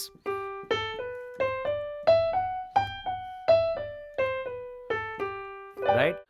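Digital piano playing a major scale up and back down in a swing rhythm, one note at a time, over a repeated low left-hand note.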